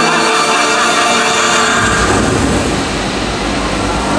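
Show soundtrack music played over the park's speakers, joined about halfway through by a deep, steady rumble.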